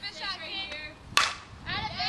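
A softball bat hitting a pitched ball: a single sharp crack a little past a second in.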